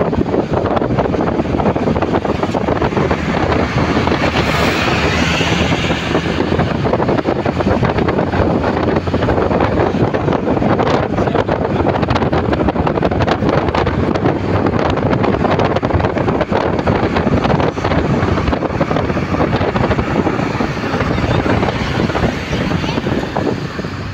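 Wind rushing over the microphone and road noise of a car travelling at motorway speed, a steady loud rush, with a brief rising hiss about five seconds in.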